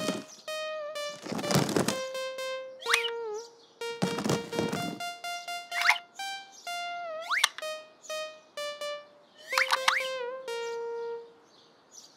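Children's cartoon background music: a simple melody of held notes. Over it come several quick rising boing-like glides and two short swishes as sound effects.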